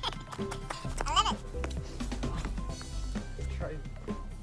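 Background music with a steady, light beat. A short voice call comes about a second in.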